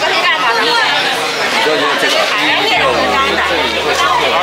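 Several people talking at once, loud overlapping chatter; a low steady hum joins about three seconds in.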